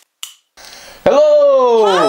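A click from a long butane candle lighter being sparked, then a faint hiss. About halfway in, loud voices break in with a long, falling cry.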